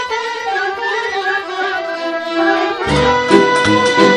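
Romanian folk orchestra playing: violins carry a slow, sustained melody, and about three seconds in a bass and rhythm accompaniment join with a steady pulse.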